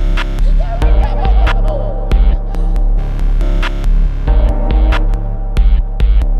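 Minimal electronic music with no vocals: a deep, throbbing bass hum that pulses in a repeating pattern, with sharp digital clicks over it. A short wavering tone sounds about a second in.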